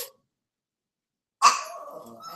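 A small pet dog barks, starting suddenly about one and a half seconds in.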